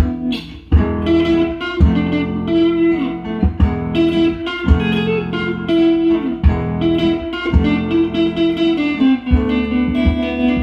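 Electric guitar playing a plucked melody over a looped nylon-string guitar backing, in a flamenco/jazz fusion style, with a brief lull about half a second in.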